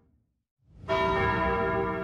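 A bell-like chime from the show's title-card music sting: after a brief silence it is struck about a second in and rings on with many steady overtones, slowly fading.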